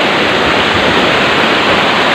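Loud, steady rush of white water pouring over rocks in a fast stream.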